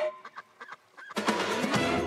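A few short honks from geese during a brief lull, then music comes back in loud just over a second in.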